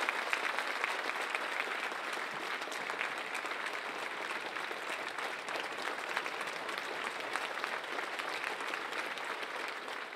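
Large auditorium audience applauding steadily, a standing ovation of many hands clapping at once.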